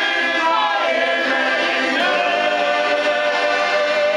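A group of men singing a folk song together, accompanied by several piano accordions playing steady held chords.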